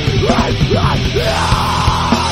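Late-1990s metalcore recording playing: heavily distorted guitars and fast drums, with a harsh yelled vocal held through the second half.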